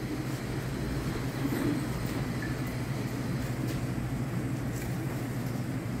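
A steady low mechanical hum with a faint rumble, even throughout.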